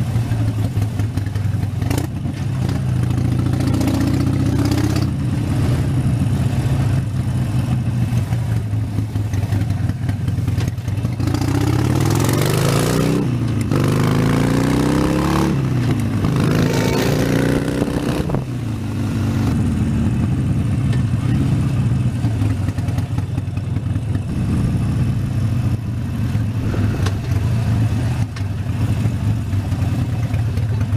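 Harley-Davidson Sportster 72's 1200 cc V-twin running steadily at low speed in traffic. About eleven seconds in, the engine revs up, its pitch rising and dropping back twice as it shifts up, with wind noise while at speed; then the revs fall away and it settles back to a steady low note.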